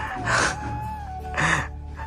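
Two short, breathy gasps from a man choked up with emotion, about half a second in and again near the end, over faint background music holding one note.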